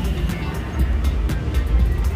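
Electric countertop blender motor running steadily, mixing a thick pie batter of eggs, oil, milk and flour, over background music.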